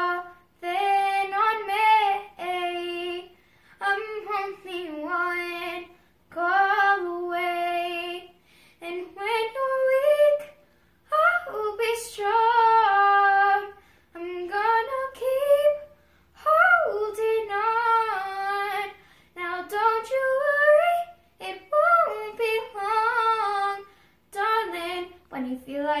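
A ten-year-old girl singing unaccompanied, in sung phrases of a second or two with short breaks for breath between them.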